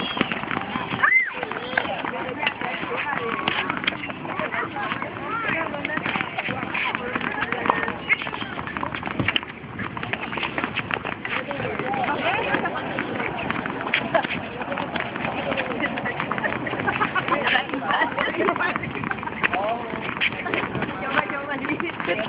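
Several children bouncing tennis balls with their rackets, a dense, irregular patter of ball hits with no steady rhythm, under children's voices chattering throughout.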